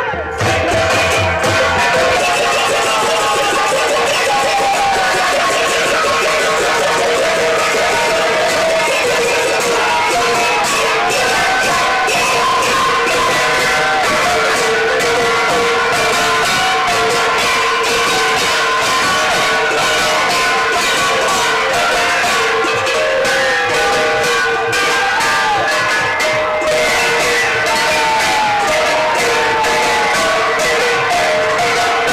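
Brass hand gongs (ghanta) and cymbals beaten continuously in devotional procession music, with a crowd chanting and shouting over them.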